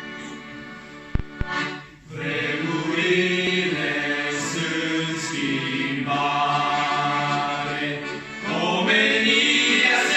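A small church youth choir singing a Romanian hymn into microphones, the voices coming in about two seconds in over held accompaniment chords and growing fuller near the end. Two brief knocks sound just before they begin.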